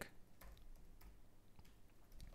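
A few faint, irregular keystrokes on a computer keyboard against near silence.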